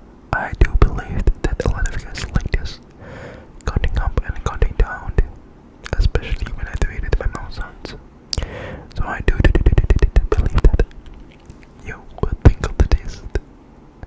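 Dice clicking and rattling against each other close to the microphone, in about five bursts of rapid clicks separated by short pauses.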